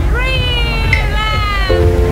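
A woman's two long, high vocal exclamations, each falling in pitch, over electronic dance music with a steady bass beat.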